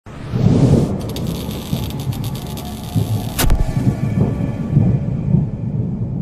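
Logo-intro sound design: a deep, pulsing rumble under a rising hiss, with crackling in the middle and one sharp hit about three and a half seconds in, before it fades away.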